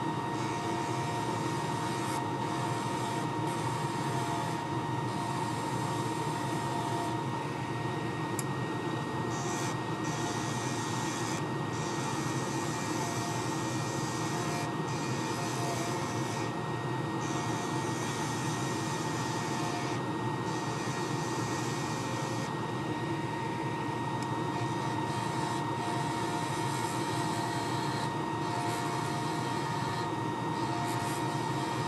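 Wood lathe running at about 2,600 rpm with a steady whine, while a skew chisel shaves a glued pen blank wrapped in rubber bands. A high cutting hiss comes and goes as the chisel is pushed into the blank and drawn back.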